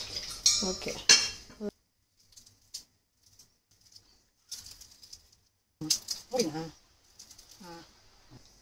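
Clinks and scrapes of a utensil against a stainless steel bowl while idiyappam dough is handled, in the first second or two, followed by a long near-silent stretch with a brief murmur of voice about six seconds in.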